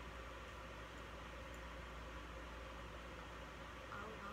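Quiet room tone: a faint, steady hiss with a low hum beneath it and no distinct sounds.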